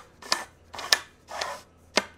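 Wooster Sherlock telescoping extension pole being pulled out after its button is pressed: short sliding scrapes about half a second apart, then a sharp click near the end as the locking pin catches.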